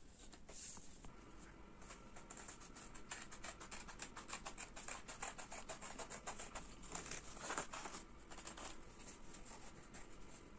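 Small scissors snipping through folded paper in quick, repeated cuts, densest and loudest toward the last few seconds. Light pencil scratching on paper comes before the cutting.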